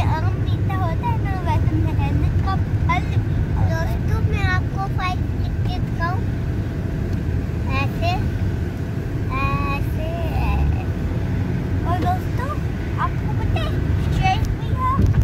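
Steady low rumble of a moving car heard from inside its cabin, under high-pitched children's voices.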